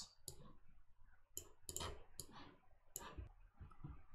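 Faint clicks of a computer mouse, about six spread unevenly over a few seconds.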